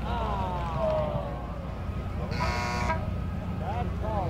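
A field horn sounds one short blast of about half a second, roughly two seconds in, over shouting voices.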